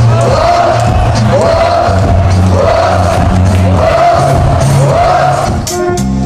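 Live kwaito dance music with a steady bass line and a short rising melodic figure repeated about once a second, over crowd noise. Just before the end it changes to a different passage with sharp drum-kit hits.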